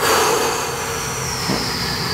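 A man's long, breathy sigh, starting suddenly and easing off slowly.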